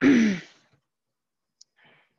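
A woman's voiced sigh, breathy and falling in pitch, lasting about half a second. It is followed by near silence, a faint click, and a soft breath near the end.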